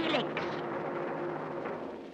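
A man's cartoon voice finishing a word at the start, then soft background music holding a low sustained chord.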